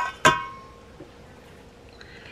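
Metal measuring spoons clinking against the rim of a stainless steel mixing bowl: two ringing clinks, the second about a quarter second in, each fading out over about half a second.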